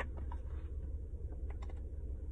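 A few light, sharp plastic clicks and crackles as a large plastic water jug is gripped and its screw cap twisted open, over a steady low rumble.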